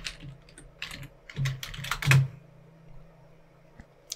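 Computer keyboard keys clicking as someone types a short run of characters. The keystrokes come in a quick burst through the first two seconds or so, then stop.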